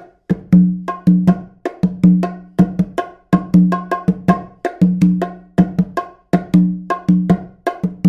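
Congas and bongo played by hand in a fast, steady samba groove. The left hand plays a tamborim pattern on the macho, the small drum of the bongo, while the right hand plays ringing open tones on the conga.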